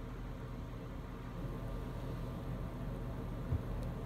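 Steady low background hum with a faint hiss, and one soft click about three and a half seconds in.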